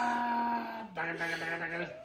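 A man's long, drawn-out 'ahh' cry of mock pain, held on one note and then dropping to a lower held note about a second in before fading.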